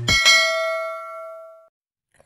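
A single bell ding sound effect, struck once and ringing out in several clear tones that fade away over about a second and a half. It is the notification-bell chime of a subscribe-button animation.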